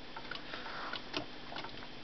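Several small solar-powered dancing figurines ticking faintly and irregularly as their rocking mechanisms swing, the clicks of different figures overlapping out of step.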